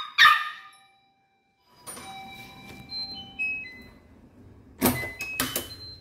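A small dog's bark cut off at the start, then a faint run of electronic beeps stepping in pitch and two sharp clacks near the end, from the front door's lock and latch.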